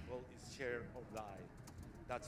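Faint speech: a man talking into a handheld microphone, in short bursts.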